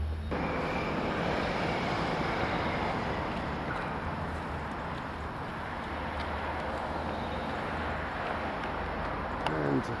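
A steady outdoor rushing noise starts abruptly and eases slightly, over a faint low hum.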